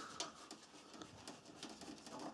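Faint handling sounds of a hand working the welder's ground cable and its plastic gland nut where it passes through the sheet-metal case: a small click just after the start, then scattered light ticks and rustles.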